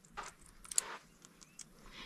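Faint handling noises with one light click about three quarters of a second in, as a small magnet is worked against the iron surface of the Hoba meteorite.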